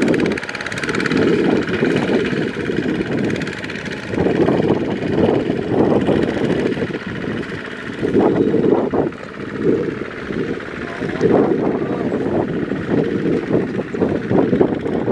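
Kubota ZT155 power tiller's single-cylinder diesel engine running under load as it hauls a loaded trailer through sticky paddy mud, its loudness swelling and dropping every couple of seconds.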